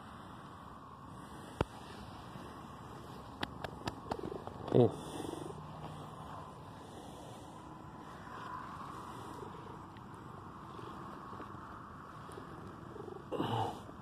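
Domestic cat purring steadily while being stroked, close to the microphone. A sharp click comes about one and a half seconds in, with a few lighter clicks a couple of seconds later.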